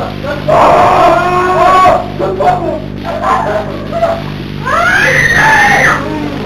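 High-pitched wailing cries in two long bouts, the second rising higher, with shorter cries between, over a steady low drone.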